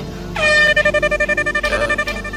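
DJ air-horn sound effect over a hip-hop beat: one long horn blast with a rapid pulsing flutter, coming in about half a second in.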